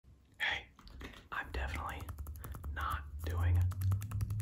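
A man whispering close to the microphone, with many quick light clicks and taps between the words.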